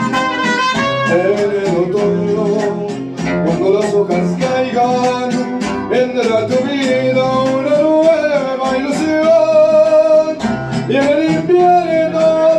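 Mariachi band playing live: trumpets play at the start, then a male singer carries the song over strummed guitars.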